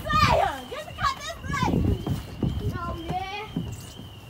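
Children's high-pitched voices at play: several short squeals and calls with sliding pitch, over a low rumbling noise.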